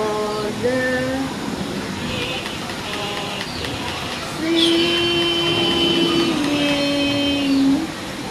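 A voice singing a wordless tune: a few short notes in the first second, then two long held notes from about halfway, the second a step lower.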